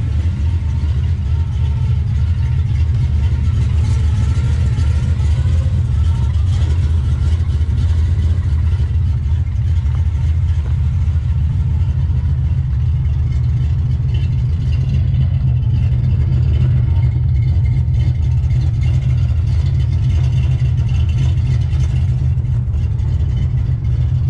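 Chevrolet 350 small-block V8 idling steadily, a low, even rumble through headers and a dual exhaust with Flowmaster-style mufflers.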